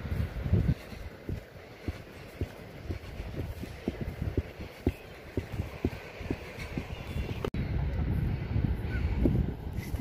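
Footsteps on grass, about two a second, from someone walking uphill carrying the microphone, with wind buffeting the microphone; the wind rumble grows louder near the end.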